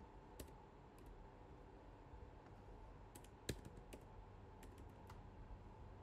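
Faint computer keyboard keystrokes: a dozen or so sparse, separate key clicks, the loudest about three and a half seconds in, as a few characters are selected and deleted.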